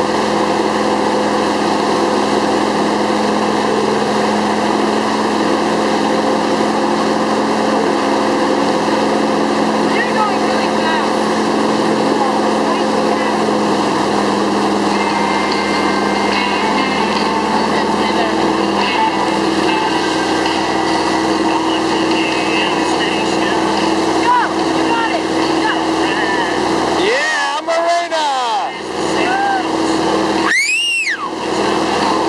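A towboat's engine running steadily under way, with the rush of water from its wake. Near the end, a few brief rising-and-falling whooshing sweeps.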